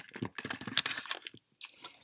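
A cardboard baking soda box being handled and picked up: a dense run of crunchy rustles and scrapes that thins out about one and a half seconds in.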